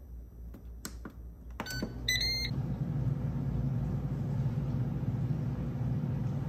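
Ninja DualZone air fryer being started: a few clicks from its buttons and dial, a short beep about two seconds in, then its fan running with a steady low hum.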